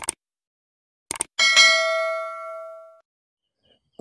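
Intro sound effect for an animated logo: a short click at the start and two quick clicks about a second in, then a single bell-like ding that rings out and fades over about a second and a half.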